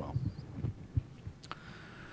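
Handling noises at a lectern: a few soft low thuds, then a single sharp click about one and a half seconds in, over a faint room hum.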